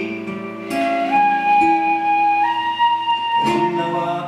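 Shinobue (Japanese bamboo transverse flute) playing a fill of long held notes, each one stepping higher, over an acoustic guitar accompaniment with strums about a second in and again near the end.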